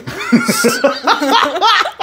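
A man and a woman laughing heartily together.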